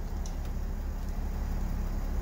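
Mercedes-Benz Sprinter van's engine idling steadily, heard from inside the cab as a low, even hum.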